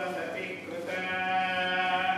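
Tamil devotional singing: a voice holds long notes, moving to a new note about a second in, over a steady drone.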